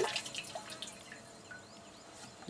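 The end of a pour from a plastic jug into a plastic drum: the stream breaks into a few scattered drips of liquid in the first second, then fades out.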